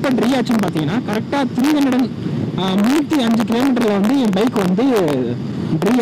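Mostly speech: a voice talking without pause, with the Bajaj Pulsar 150's single-cylinder engine and wind noise underneath as the bike cruises at about 65 km/h.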